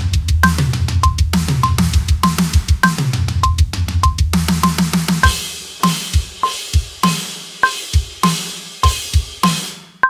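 An acoustic drum kit plays a metalcore fraction fill at 100 beats per minute over a metronome click, with a higher-pitched accented click on each bar's first beat. The first half is dense groups of hand strokes on the snare and toms broken by pairs of double-kick strokes. About halfway in it gives way to a sparser beat of kick, snare and cymbals.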